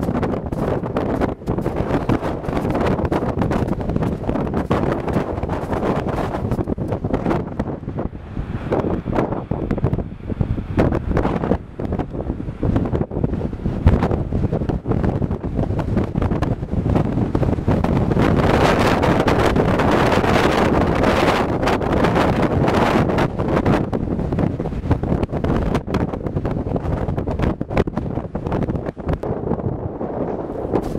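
Wind buffeting the camera's microphone: a loud, continuous rumble that rises and falls in gusts, strongest a little past the middle.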